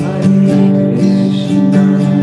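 Acoustic guitar strummed in a steady rhythm of about four strokes a second, its chords ringing on between strokes.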